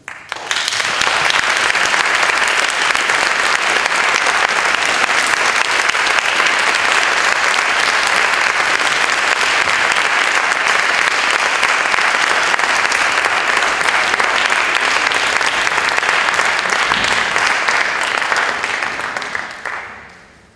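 Audience applauding, starting suddenly and dying away near the end.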